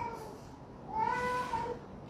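A soft, high-pitched cry, twice: a short falling one at the start, then a longer drawn-out one about a second in.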